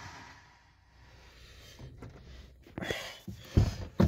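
A quiet car cabin, then a few low thumps and scuffs near the end from a handheld phone camera being moved about.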